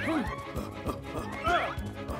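Cartoon background music with a beat, under a cartoon character's wordless yelps that swoop down in pitch near the start and up again about one and a half seconds in.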